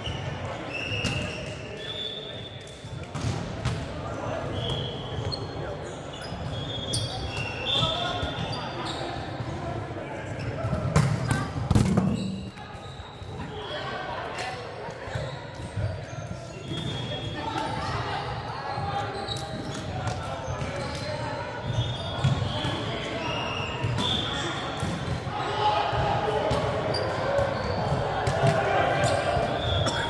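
Volleyball being played in a large gym: sneakers squeak in short high chirps on the hardwood court, the ball smacks off hands and the floor, and players' voices echo through the hall. The loudest hit comes about eleven seconds in.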